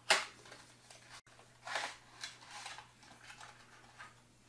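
Small paperboard product box being opened by hand: one sharp crack right at the start, then a few soft rustling, scraping sounds as the thermometer-hygrometer in its plastic tray is slid out of the box.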